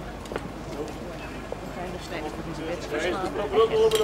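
Crowd of people talking outdoors, with one voice calling out loudly and holding the note near the end.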